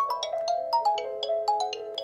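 Mobile phone ringtones playing: a melody of held notes carries on while a second tune of quick, bright, bell-like notes comes in at the start, as an incoming call rings.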